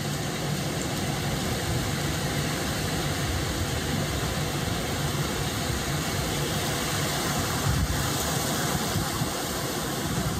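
Steady rush of surf washing in on a beach, with wind rumbling on the microphone.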